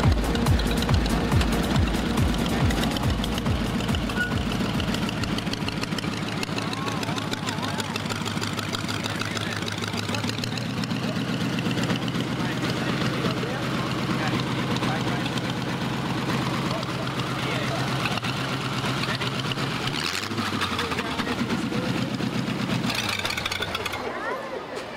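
Belly-tank lakester hot rod's engine running at a lumpy idle. Its exhaust beats are strong at first while the car rolls and then settle into a softer, steady idle that fades near the end. Music and crowd voices sit behind it.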